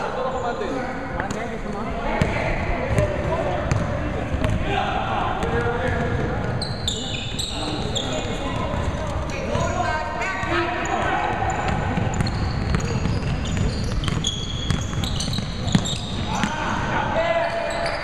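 A basketball bouncing on a hardwood gym floor in repeated sharp strikes, under the ongoing calls and shouts of players on the court.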